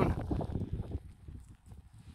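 Footsteps on a rough stony path, an irregular run of soft low knocks that fades after about a second, with a low wind rumble on the microphone.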